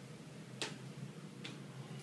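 Two sharp taps, the first louder, about a second apart, over a steady low hum in the room.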